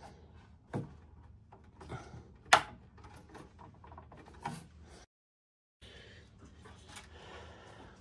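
A Dante Brooklyn II network card being pushed into the internal expansion slot of a mixer's main board: faint handling rubs and a few small knocks, with one sharp click about two and a half seconds in as the card goes into its connector and holder. The sound drops out completely for under a second around the middle.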